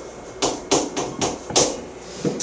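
Chalk tapping and scraping on a green chalkboard as a short line of writing goes up, about five sharp clicks in quick succession.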